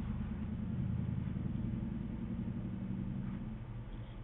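Steady low hum with an even hiss, a background machine or electrical drone holding constant pitch throughout.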